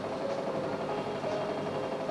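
A steady background hum with a few faint held tones and no distinct events.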